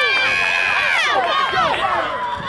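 Softball spectators yelling and cheering for a deep hit, several high voices overlapping, with one long held shout in the first second.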